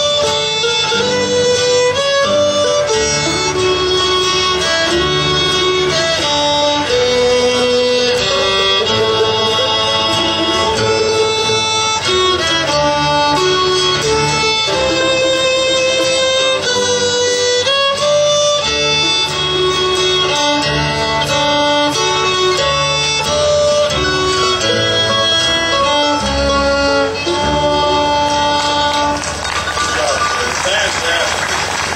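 Fiddle playing a lively melody over guitar accompaniment; the tune winds up near the end.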